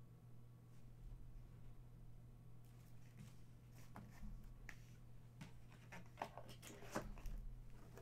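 Faint handling sounds over a steady low hum: scattered small clicks and rustles start about three seconds in and grow busier toward the end, as items and cardboard boxes on a table are handled.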